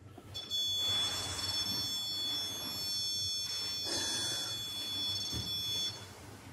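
An electronic buzzer sounding one continuous, high-pitched tone for about five and a half seconds, starting and stopping abruptly.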